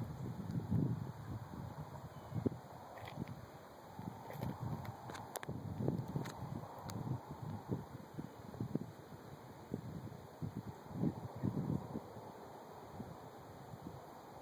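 Wind buffeting a phone microphone in irregular gusts, with a few faint clicks about halfway through.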